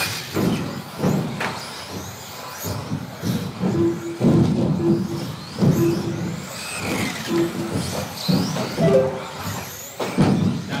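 Electric RC stock buggies racing: motor whines rise and fall with the throttle, over tyre noise and the clatter of landings. Short beeps recur every second or so.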